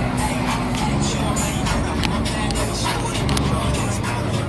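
Loud music with a heavy, steady bass and a regular beat, played through a car sound system.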